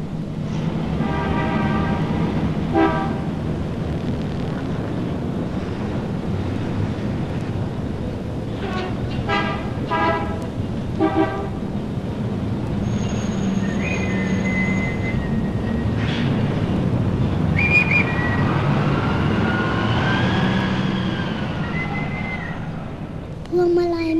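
Street traffic laid as a sound-effect intro to a song: a steady rumble of engines, with car horns honking in short blasts near the start and again about ten seconds in, and pitched tones gliding up and down near the end.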